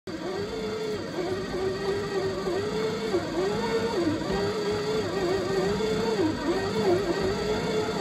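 Electric dough-kneading machine running with a ball of bread dough turning in its bowl: a steady motor whine with a low hum beneath, its pitch dipping briefly at a regular rate of just over once a second as the machine works against the dough.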